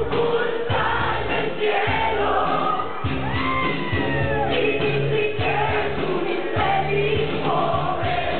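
Loud music with a steady bass beat and a lead singing voice, played over a nightclub sound system.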